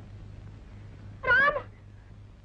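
A single short, high-pitched wavering cry about a second in, lasting about a third of a second. Beneath it runs a steady low hum.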